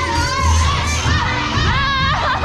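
An audience, many of them children, shouting and cheering over dance music during a stage performance.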